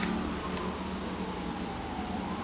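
Distant emergency-vehicle siren wailing, its pitch sliding slowly down, over steady background noise.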